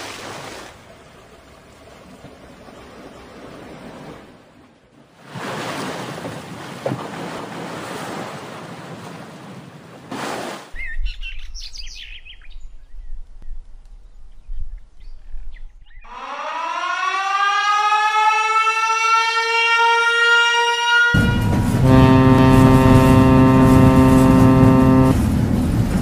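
A stretch of hissing noise, then a low rumble, then a siren winding up in pitch over about five seconds. It is followed by a loud, deep, steady horn blast that runs through the last four or five seconds.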